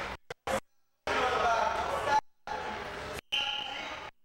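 Indistinct voices and a few short thumps during wrestling practice on a mat. The sound comes in choppy chunks that start and cut off abruptly, with silent gaps between.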